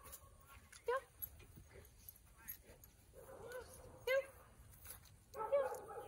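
Seven-month-old Great Dane puppy whimpering in short pitched calls while being walked on a leash.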